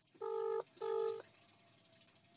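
Two short, identical beeps of a steady electronic-sounding tone, each about half a second long and a fraction of a second apart.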